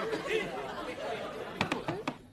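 Indistinct chatter of several overlapping voices, with two sharp knocks near the end.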